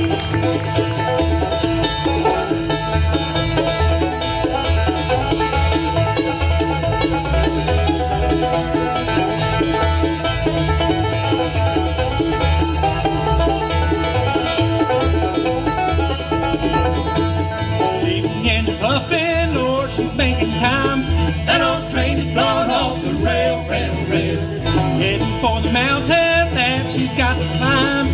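Live bluegrass band playing an instrumental passage on five-string banjo, fiddle, mandolin, acoustic guitar and upright bass, with the bass keeping a steady beat. Rapid banjo picking comes to the front in the second half.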